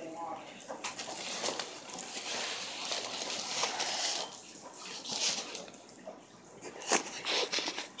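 Water-filled plastic fish bags crinkling and rustling as they are handled, with slight sloshing and a few sharp crackles and knocks.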